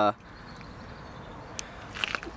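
A man's voice trails off at the very start, then a pause of steady faint outdoor background noise, with one small click near the end.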